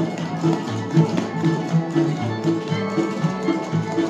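Upbeat bluegrass music from string instruments: a bass line bouncing between two notes on the beat under guitar strumming and a fiddle melody.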